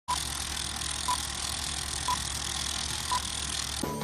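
Film-leader countdown sound effect: a short, pure beep about once a second, four in all, over a steady hiss. It cuts off suddenly near the end.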